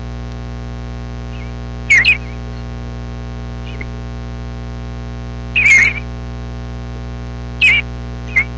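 A bird chirping: a quick double chirp about two seconds in, a longer call past halfway and one more near the end, over a steady low hum.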